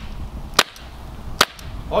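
CO2-powered pepperball pistol firing two sharp shots, a little under a second apart.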